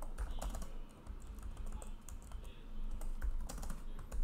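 Typing on a computer keyboard: irregular key clicks, with a denser run of clicks about three and a half seconds in.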